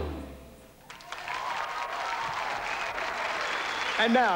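Music fading out, then, about a second in, an audience breaking into applause that carries on steadily.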